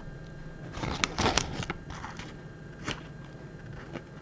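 Plastic snack-bar wrapper crinkling as it is handled: a run of crackles about a second in and a single crackle near three seconds.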